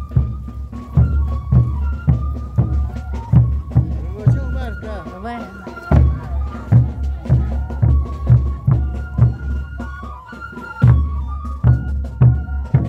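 Traditional Andean folk music: a reedy wind melody held over a steady bass drum beat of about two strikes a second.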